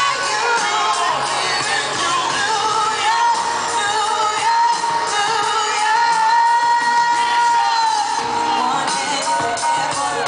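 Live hip-hop concert music in an arena, recorded from the audience seats: the band plays while a female vocalist sings, holding one long note from about three to eight seconds in.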